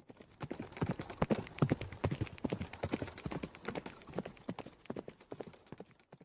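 Galloping hoofbeats sound effect: a rapid run of clip-clop hoof strikes, loudest in the first seconds and trailing off near the end.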